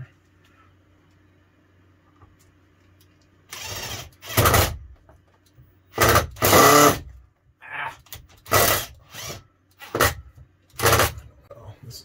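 Bosch 12-volt cordless drill/driver running in short bursts, driving a coated deck screw through a shower-rod bracket into the wall stud. It starts about three and a half seconds in, with roughly seven or eight stop-start pulls of the trigger, each under a second.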